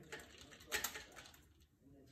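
Faint scratchy strokes and small clicks of a watercolour brush working paint in a metal tin of half-pan watercolours, the loudest about a second in.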